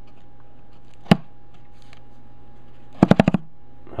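Finger flicking the pleats of a pleated HEPA wet/dry-vac filter to knock caked drywall dust loose. There is one sharp snap about a second in, then a quick run of about five snaps near the end.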